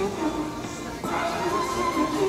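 Music playing, with a wavering melodic line; it gets louder about a second in.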